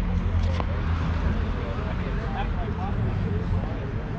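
A car's low engine rumble as it drives off through the lot, steady and lower than the moment before, with faint voices of people in the background.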